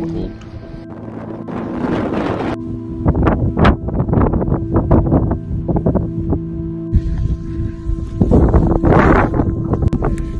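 Background music with steady held tones, under strong gusts of blizzard wind buffeting the microphone that come and go several times.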